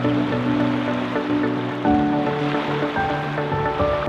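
Background music with sustained notes over a steady wash of small waves lapping on a lake shore; the water sound cuts off suddenly at the end.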